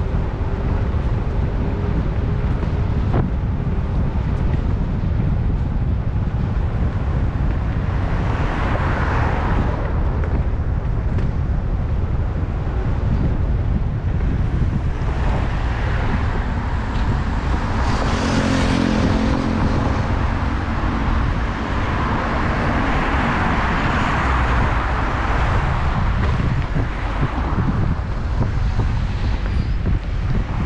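Wind buffeting the microphone of a moving electric scooter, a heavy steady rumble, mixed with tyre and road noise. Passing cars in the next lane swell and fade three or four times. One of them, about two-thirds of the way through, brings a brief engine hum.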